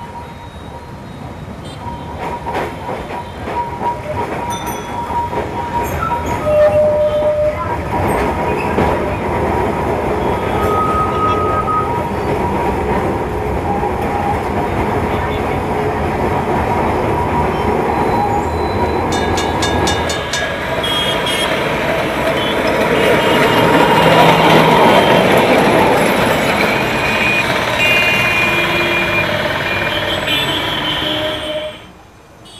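Street tram running along its rails. The noise builds over the first several seconds and then holds steady, with brief tones sounding now and then.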